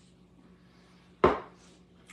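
A small red plastic footed bowl set down on the countertop: one sharp knock a little over a second in.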